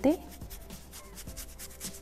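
A stiff dry brush scrubbing paint onto the edge of a wooden board in quick repeated strokes, a dry rubbing sound.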